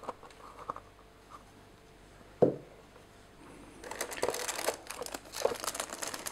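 Handling sounds from unboxing a handheld radio: a few light plastic clicks, a single sharp thump about two and a half seconds in, then plastic packaging crinkling and rustling through the last two seconds.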